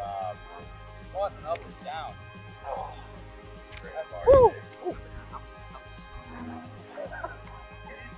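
Background music, over which the golfers give short excited shouts after a holed putt; the loudest is one rising-and-falling yell about four seconds in.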